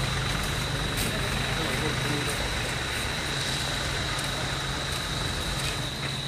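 Steady outdoor background noise of a gathering: indistinct voices over a low, engine-like hum, with a thin steady high whine above.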